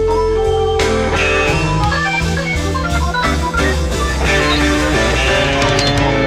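Instrumental passage of a slow blues band recording, organ and electric guitar playing over the band with no vocals.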